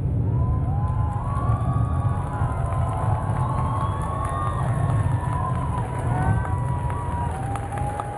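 Audience cheering and shouting, many voices rising and falling over one another, over a steady low rumble.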